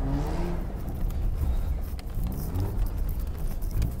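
Mazda RX-8's twin-rotor Wankel rotary engine heard from inside the cabin while sliding on snow, running at low revs; its pitch falls just at the start and rises again about two and a half seconds in.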